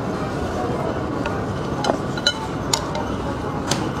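A mouthful of food being chewed, with a few short, sharp clicks and clinks of chopsticks against a ceramic bowl spread through, over steady background noise.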